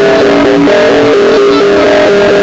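Loud live jaranan accompaniment music: a repeating melody of short held notes stepping up and down, over steady percussion.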